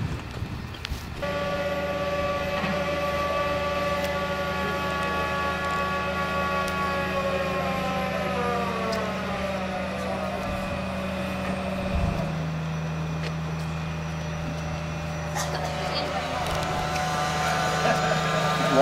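Large mobile crane's engine and hydraulics working as it swings a precast concrete culvert section: a steady low hum under a whine of several tones. About eight seconds in the whine slides down in pitch and fades, and a few seconds later the low engine note drops slightly.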